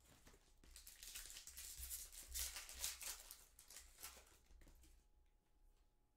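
Foil trading-card pack wrapper crinkling and tearing open, a dense rustle that dies away about four and a half seconds in.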